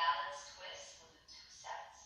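A woman's voice talking, played back through a small speaker so that it sounds thin, with no low end.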